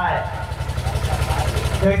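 A small engine idling steadily, a low, even chug of about a dozen pulses a second.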